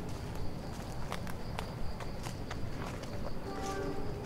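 Footsteps walking through grass and undergrowth, irregular steps about every half second over a low rumble, with a steady high tone. A brief pitched call begins near the end.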